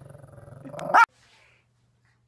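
Shih Tzu growling low, growing louder, then giving one sharp bark about a second in.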